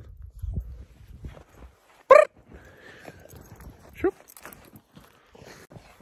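Belgian Malinois giving two short, high-pitched barks about two seconds apart, the first louder.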